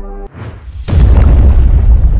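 Cinematic logo-reveal sound effect: the end-screen music cuts off, a short rising whoosh builds, and a heavy boom hits about a second in, followed by a long low rumble.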